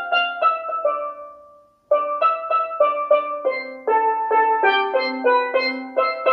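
Steel pan struck with rubber-tipped mallets, one stroke per note in a simple melody: the basic hitting technique, each note ringing out and fading. Two phrases of single notes, with a short break between them about one and a half seconds in.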